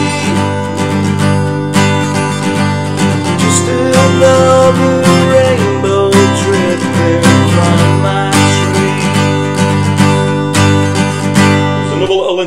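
Taylor 214ce steel-string acoustic guitar, capoed at the third fret, strummed steadily through the chord shapes Dsus2, A and E, the chord changing every couple of seconds.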